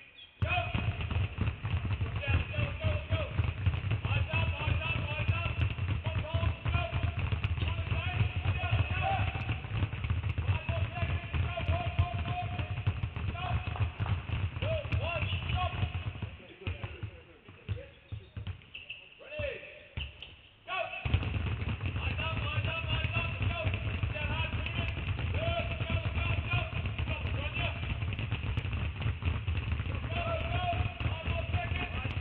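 Many basketballs being dribbled at once on a hardwood gym floor, a dense, continuous patter of bounces with voices behind it. The bouncing drops away for a few seconds about two-thirds of the way through, then resumes.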